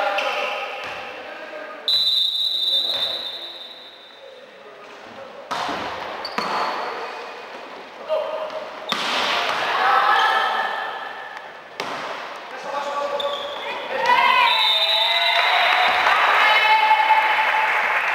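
Volleyball being hit during a rally, with sharp impacts echoing in a sports hall. A referee's whistle is blown long about two seconds in and again around fourteen seconds in. Players' voices call out over the play.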